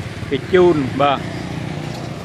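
A voice speaks briefly over the steady low hum of motorbikes passing on the road.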